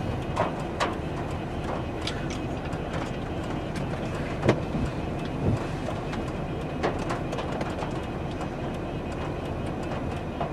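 Steady rumble of a vehicle heard from inside its cabin, with scattered sharp clicks and knocks, the loudest about four and a half seconds in.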